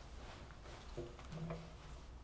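Quiet room tone: a steady low hum, with a few faint knocks and two brief faint creaks about a second in.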